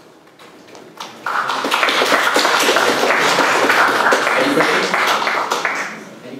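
Audience applauding: the clapping starts about a second in, holds steady, and dies away near the end.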